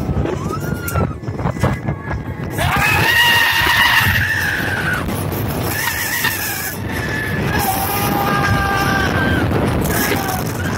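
Riders screaming on a thrill ride: several long, high, held screams starting about two and a half seconds in, over rushing air buffeting the microphone.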